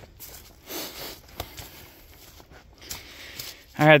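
Faint rustling footsteps on dry pine straw, with a light click about a second and a half in. A man begins speaking near the end.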